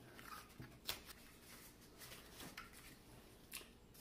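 Faint crackling of masking tape being pulled off the roll, torn and pressed onto cardboard tubes, with a few sharp clicks, the clearest about a second in.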